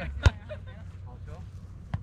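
A volleyball served, the hand slapping the ball sharply about a quarter second in, then a second, fainter hit of the ball near the end.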